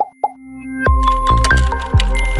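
Animated logo sting: two quick plops, then music swells in with deep hits and bright held tones.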